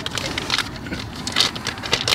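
Thin clear plastic bag crinkling and rustling in irregular crackles as it is handled around a pedal cover.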